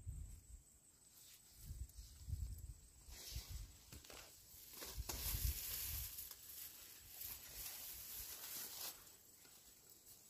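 Hands digging sweet potatoes out of the ground: rustling of leafy vines and soil, with scattered dull low thumps as the tubers are handled and dropped into a woven basket, and a longer stretch of rustling from about five to nine seconds in.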